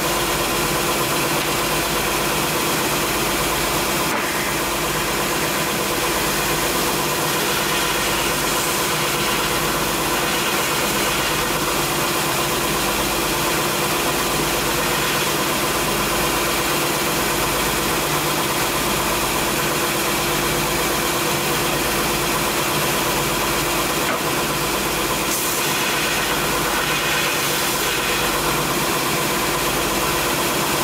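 Vertical belt sander running with a steady motor hum, while the steel of a chainsaw bar is ground against the moving abrasive belt, the grinding getting brighter for a few seconds near the middle and again near the end.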